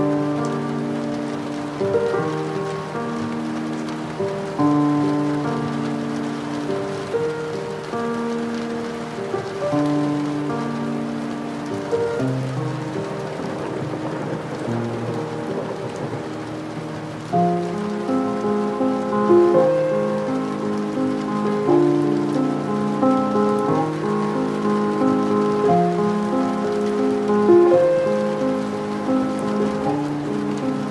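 Steady rain falling, mixed with slow classical music. The music grows fuller, with quicker notes, about seventeen seconds in.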